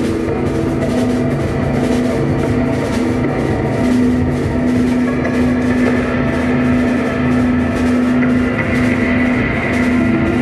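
Psychedelic rock band playing live: a steady drum beat under a long held low note, with sustained tones layered above it.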